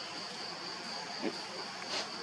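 Steady high-pitched drone of insects, one even tone that holds throughout, with a brief low sound a little over a second in.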